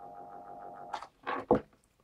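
A small AC motor, run from 220 V mains through a capacitor, humming steadily as it turns under power. The capacitor has made it start and spin, where on two wires alone it only hummed. The hum cuts off about a second in, followed by a brief scrape and click as the plug is pulled out.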